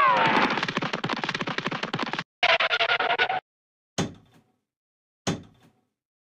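Cartoon sound effects: a quick falling tone that runs into a fast rattle for about two seconds, then a shorter buzzing rattle, then two single knocks about a second apart.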